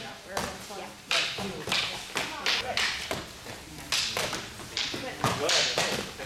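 Full-contact eskrima stick sparring: rattan sticks cracking against padded armor, helmets and each other in irregular sharp hits, roughly one or two a second, over background voices.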